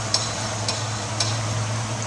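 Boat engine running steadily at low speed as the boat enters a canal, a constant low hum under a hiss of wind and water.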